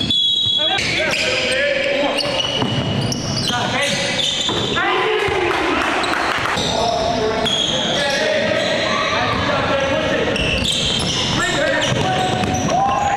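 Live basketball game sound in a gymnasium: a ball dribbled on the hardwood court amid players' voices, with the echo of a large hall.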